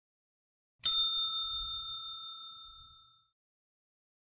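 A single bright ding sound effect, struck about a second in and ringing out as a clear tone that fades over about two seconds: the chime of a logo sting.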